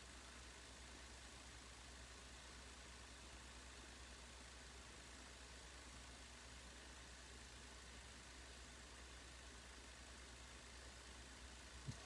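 Near silence: a faint steady low hum and hiss, with nothing changing.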